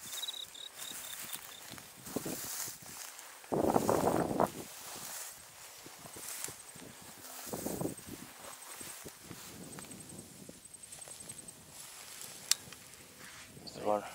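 Footsteps brushing through tall dry grass in uneven bursts, the loudest about four seconds in, with a high insect trill faintly behind them. A single sharp click near the end.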